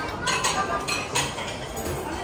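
Cutlery and crockery clinking, with about four sharp clinks over a steady background of dining-room clatter.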